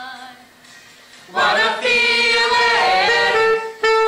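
A group of young voices singing together. A soft held note fades, then the group comes in loudly about a second and a half in and holds long notes.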